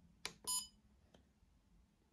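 A click as a button on a usogood TC30 trail camera is pressed, then one short electronic key-press beep from the camera as the menu selection opens. A fainter click follows about a second in.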